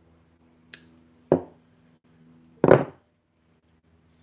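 Handling noises from fishing tackle being worked by hand: a short sharp click, then two knocks, the second one louder, over a faint steady hum.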